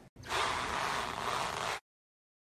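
A loud, even rush of noise lasting about a second and a half, cutting off suddenly into dead silence.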